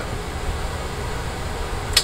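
Steady indoor background noise with a low rumble, and one short sharp click near the end.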